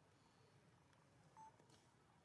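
Near silence, with one short, faint beep-like tone a little past halfway through.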